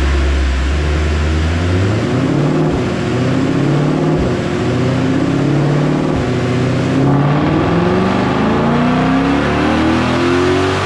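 2020 Shelby GT500's supercharged 5.2-litre V8 making a dyno pull. It starts on a deep low note, then its pitch climbs steadily as engine speed rises.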